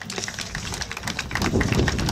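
A small audience applauding with scattered, irregular hand claps.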